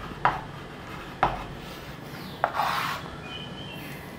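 Chalk on a chalkboard as a word is finished: two sharp taps about a second apart, then a tap and a half-second scrape of chalk about two and a half seconds in, with a faint squeak just after.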